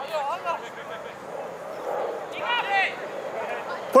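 Two short, distant shouted calls, one at the start and one about two and a half seconds in, over steady outdoor background noise; a close man's voice begins calling out right at the end.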